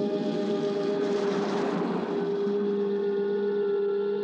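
Horror film's opening-title music: low sustained chords held steady, with a hiss swelling and fading about a second in.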